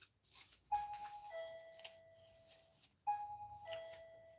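An electronic two-note chime, a higher note falling to a lower one that rings on and fades, sounds twice: just under a second in and again about two seconds later.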